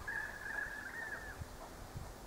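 A bird calling: one long, high whistled note that rises slightly just before it stops, a little over a second long.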